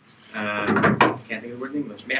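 A man speaking, with a sharp knock about a second in.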